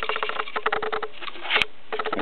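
Rapid light ticking and pattering of crickets being shaken out of a plastic container into a gecko tub, with one sharper click about one and a half seconds in.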